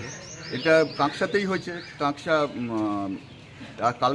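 A man talking, with birds chirping in the background.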